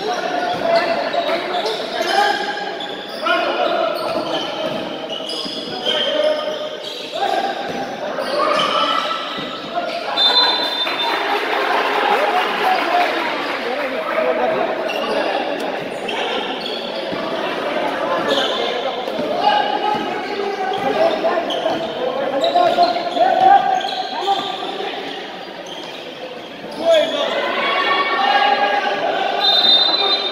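Indoor basketball game with the ball bouncing on the court and players and onlookers shouting and talking, echoing in a large hall. Brief high-pitched tones come about ten seconds in and again near the end.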